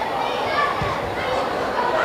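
Indistinct overlapping shouts and chatter of footballers and spectators during a match, with a brief low thump about a second in.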